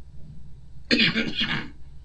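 A man's single short cough or throat-clear, about a second in, lasting under a second.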